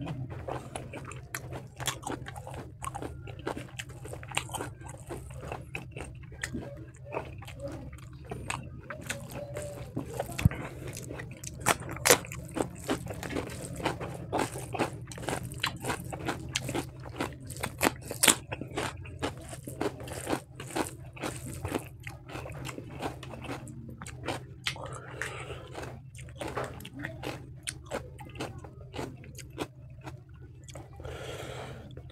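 Close-miked chewing and biting of pork ribs and rice, with many sharp wet mouth clicks and smacks over a steady low hum.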